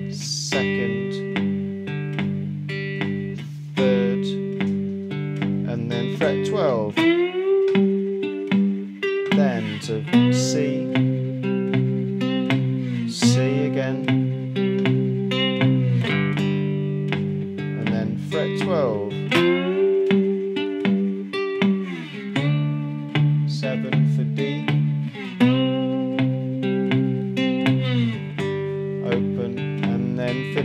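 Three-string cigar box guitar finger-picked in a swung 12-bar blues, the thumb keeping an even bass pulse with delayed finger notes in between for a lopsided shuffle feel. Slide glides between chords several times.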